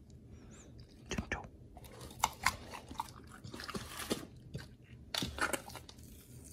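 A pit bull chewing and crunching raw food in irregular bites, with louder crunches about two seconds in and again near the end.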